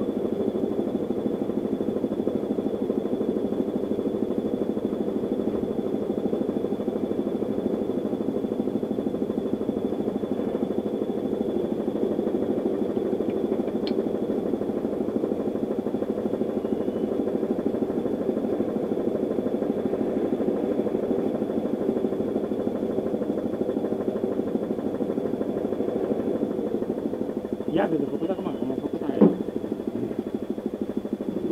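Tractor engine idling steadily while air is pumped through a hose into a tractor tyre that had lost its air, with a faint steady high whistle over it. Near the end there are a few clacks and one sharp knock as the air hose coupling is handled.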